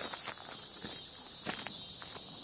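Footsteps crunching on gravel, a handful of uneven steps, over a steady chorus of crickets.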